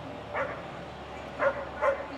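A dog barking three times: one short bark, then two more close together about a second later.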